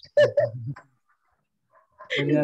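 A person's voice utters one short word or hesitation sound, lasting under a second, then falls silent for about a second.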